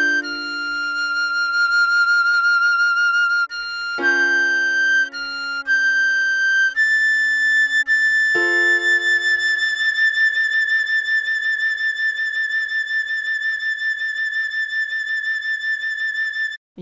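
Soprano recorder playing the closing notes of a slow melody, ending on a long held high A with vibrato. Underneath, piano chords are struck three times, about every four seconds, and ring out.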